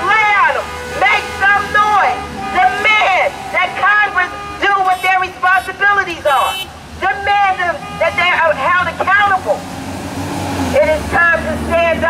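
A woman's high-pitched voice shouting at the roadside, its words not made out, over a steady rumble of passing street traffic; a heavy vehicle's engine grows louder near the end.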